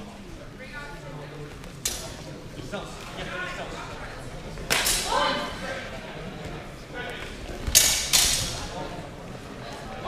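Steel fencing swords clashing in a sparring bout: sharp blade strikes with a brief metallic ring, about two seconds in, about five seconds in, and a quick pair near eight seconds, that pair the loudest.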